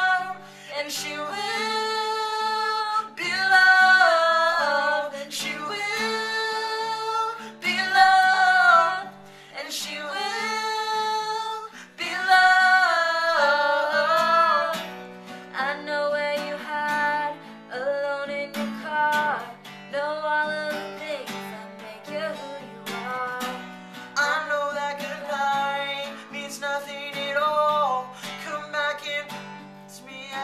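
Acoustic guitar strummed in a steady rhythm, accompanying a woman and a man singing a duet together.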